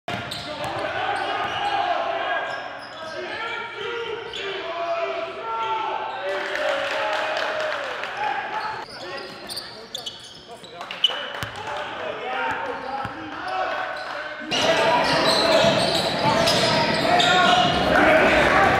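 Live game sound in a gymnasium: voices of players and spectators calling out, with a basketball bouncing on the hardwood and sharp knocks, one loud knock about 11 seconds in. In the last few seconds the crowd noise grows louder and denser.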